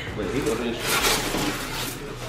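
Faint, low talking, with a brief rustle about a second in.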